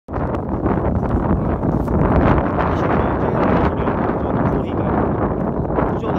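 Wind buffeting a handheld phone's microphone: a loud, steady rumble.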